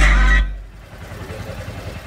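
Bass-heavy music from a tuk-tuk's custom sound system with subwoofer and horn speakers, cutting off suddenly about half a second in. A much quieter low rumble follows.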